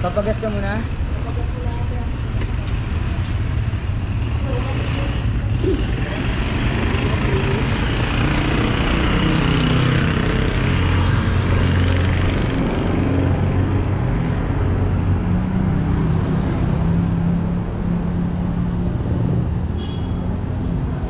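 Street traffic dominated by motorcycle engines running close by, a steady engine hum with a vehicle growing louder and passing about ten seconds in. Voices are heard briefly at the start.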